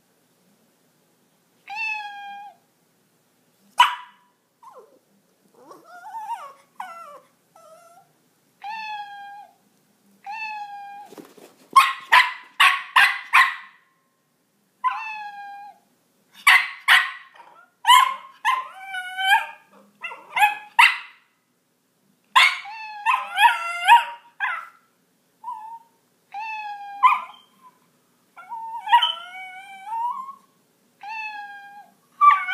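Recorded cat meows played through a phone's speaker every few seconds, answered by a miniature pinscher barking in short bursts, starting about twelve seconds in.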